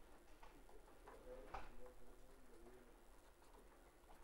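Near silence, with faint scratches of a felt-tip marker writing on paper.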